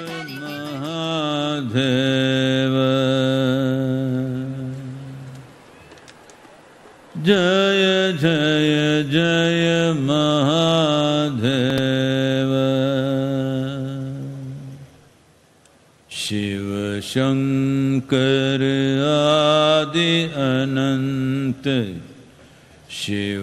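A man's voice chanting a mantra in long, drawn-out held notes, three phrases with short pauses between them.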